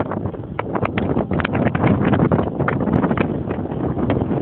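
Wind buffeting the microphone of a moving car, with the car's running noise and frequent short knocks and rattles as it drives over rough sandy ground.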